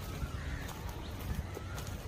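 Footsteps on a paved path with short bird chirps in the background, over a steady low rumble.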